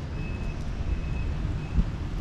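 Low rumble of wind on the microphone mixed with road traffic, with a faint thin high whine that comes and goes a few times.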